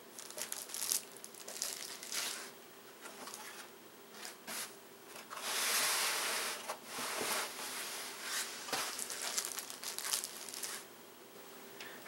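Unboxing sounds: hands rustling and crinkling plastic and paper packaging and a molded pulp tray, in short bursts with a longer spell of rustling about halfway through.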